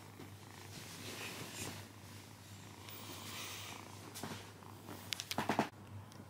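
A ginger Persian kitten purring steadily while being stroked. Near the end comes a louder burst of rapid pulses that stops abruptly.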